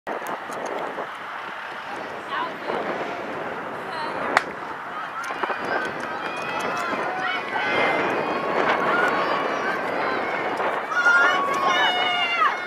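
A single starting pistol shot about four seconds in, over spectators' chatter; after it, spectators' shouting and cheering build and grow louder as the sprint goes on.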